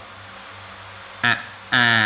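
A man's speaking voice resumes after a pause of about a second, during which only a low steady hum is heard; one short syllable comes first, then continuous speech near the end.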